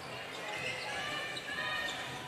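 Basketball being dribbled on a hardwood court, with sneakers squeaking in short high chirps over the steady hum of an indoor crowd.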